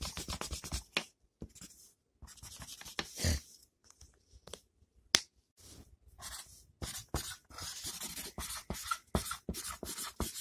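Quick scratchy strokes of a drawing tool on paper, colouring in, with a couple of short pauses and one sharp click about five seconds in.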